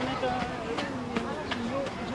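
People talking, their voices indistinct.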